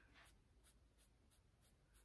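Very faint, quick rubbing strokes, about three a second, of a small pad wiped over skin on the forehead. The pad is being used with alcohol to lift leftover rolled-up lace glue.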